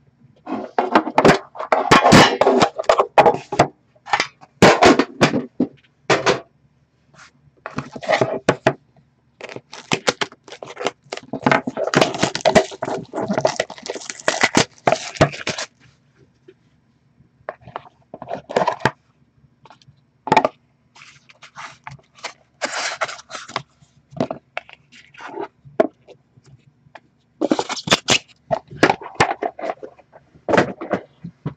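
Hands opening a hockey card box and taking out its cards: irregular rustling, scraping and light knocks of cardboard, packaging and cards being handled, in bunches broken by short pauses.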